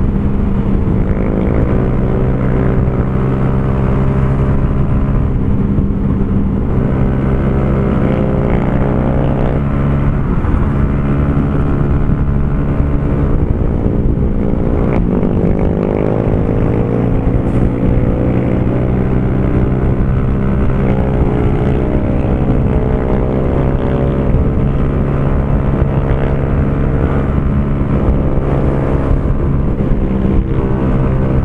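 Honda CG Fan 150's single-cylinder four-stroke engine running hard at steady high revs through a Torbal Racing aftermarket exhaust while the bike cruises at highway speed. The note holds mostly steady, wavering and sliding in pitch for a few seconds around the middle.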